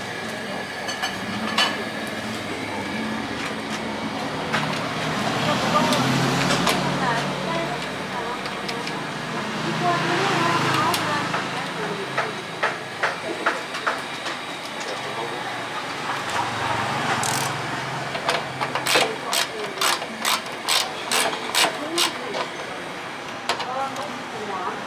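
Indistinct voices in the room, with scattered sharp clicks and then a quick run of evenly spaced clicks, about two or three a second, near the end.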